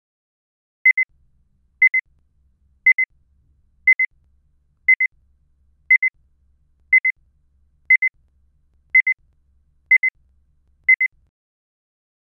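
Short, high electronic beep repeating steadily once a second, eleven times, each a quick double pulse: a timer sound marking the answering time between exam questions.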